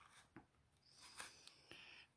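Near silence, with a few faint clicks and rustles of a carded plastic blister package being handled in the hands.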